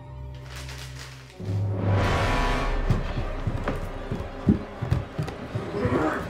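Horror film score: a low held drone breaks about a second and a half in into a sudden loud swell with a deep rumble. A run of irregular thumps and knocks follows.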